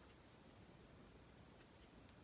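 Near silence, with a few faint, soft ticks from a beading needle and thread being worked through peyote-stitched seed beads.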